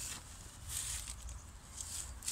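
Faint footsteps rustling on dry leaves and grass, two brief steps about a second apart, over a low steady rumble.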